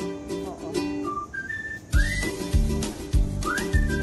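Background music: a whistled tune over light pitched backing, with a steady drum beat coming in about halfway through.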